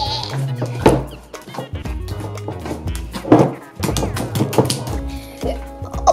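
Background music with a steady bass line plays throughout. Over it, a large mass of slime is squished and kneaded by hand in a glass bowl, with a few short louder squelches, about a second in and again around three to four and a half seconds in.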